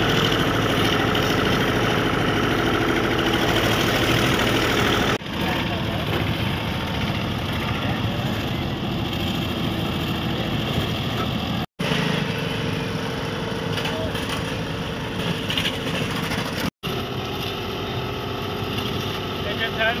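Field audio of a steady engine running under a background of people's voices. The sound breaks off abruptly about 5, 12 and 17 seconds in.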